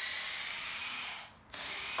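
A power tool running steadily. It cuts out about a second and a half in and starts again a moment later.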